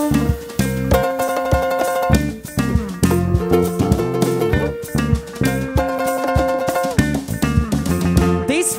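Rock band playing an instrumental passage live: electric guitars over a drum kit beat, with no vocals.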